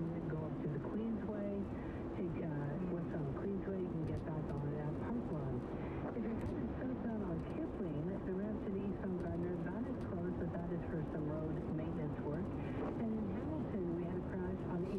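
A voice talking without a break from the car radio, a broadcast report, over steady road and tyre noise inside a car on a wet highway.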